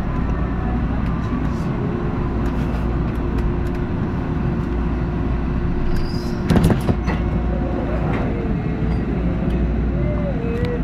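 TTC H6 subway train running out of a station into the tunnel: a steady low rumble with a steady hum, and a brief loud clatter about six and a half seconds in.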